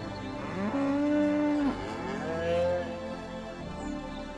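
Cows mooing over a music backing: two long moos, each swooping up in pitch and then held, the first about half a second in and the second, fainter one past the middle.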